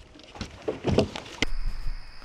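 Irregular knocks and splashy noises on a bass boat while a fish is being landed. About one and a half seconds in the sound cuts to a steady high cricket trill over a low hum.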